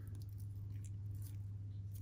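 Faint handling of an Oris Big Crown ProPilot's stainless-steel bracelet in the hands: a few soft clicks and rubs of the links and clasp over a steady low hum.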